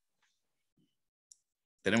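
Dead silence from noise-suppressed video-call audio, broken by one brief faint click a little past halfway, then a man's voice starting to speak near the end.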